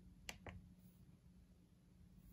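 Two faint, sharp clicks about a fifth of a second apart, shortly after the start: a finger pressing a keypad button on an EPH RDTP programmable thermostat.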